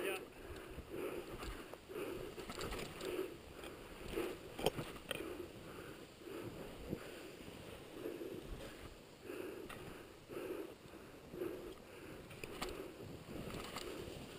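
Faint swishes and crunches of snow, coming about once a second, as a climber descends a powder slope with a pole. There is a single sharp click about four and a half seconds in.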